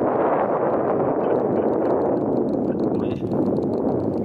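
Wind buffeting the camera microphone: a loud, steady rush of noise with no words over it.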